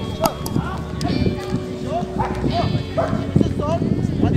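People's voices, many short calls and shouts overlapping.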